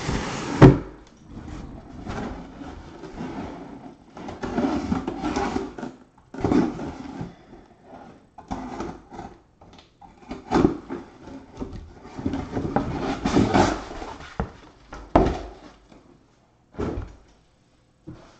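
Cardboard boxes being handled and shifted on a table: irregular knocks, thuds and cardboard scraping, with sharp knocks about half a second in and again about 15 seconds in.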